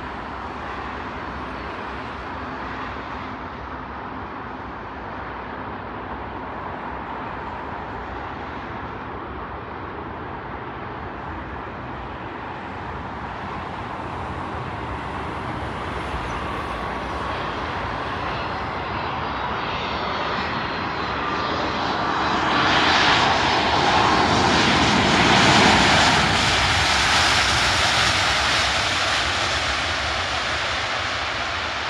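Airbus A319-131 airliner with IAE V2500 engines landing: steady jet engine noise that grows louder, loudest from a little past two-thirds of the way in as it rolls down the runway after touchdown, then easing off near the end.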